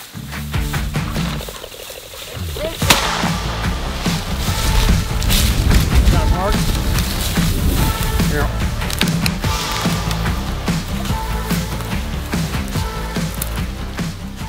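Background music throughout, with a single sharp shotgun shot about three seconds in, fired at a rooster pheasant flushed from a dog's point.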